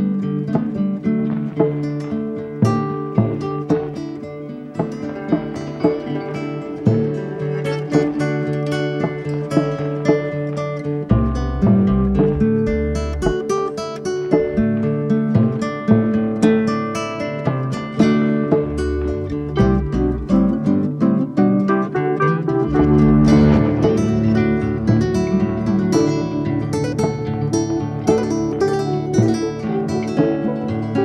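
Background instrumental music of quick plucked notes. A deeper bass part joins about eleven seconds in.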